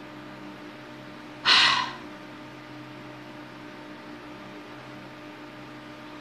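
A woman's quick, sharp in-breath close to the microphone, about one and a half seconds in, during a pause in her talk.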